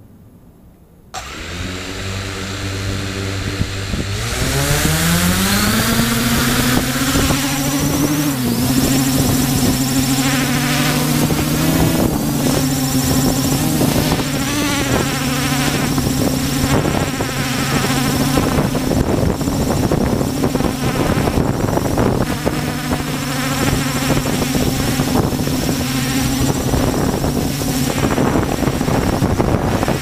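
Hubsan H501SS quadcopter's brushless motors and propellers starting about a second in and spinning up with a rising whine over the next few seconds. It then holds a loud, steady buzz whose pitch dips and swells as the throttle changes in flight, heard from the GoPro mounted on the drone, under a heavy 715-gram load of gimbal and camera.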